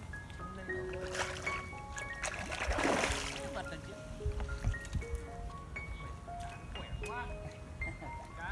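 Background music, a melody of short held notes, over water splashing as a hooked grass carp thrashes at the surface while it is drawn toward a landing net; the loudest splashes come about one and three seconds in.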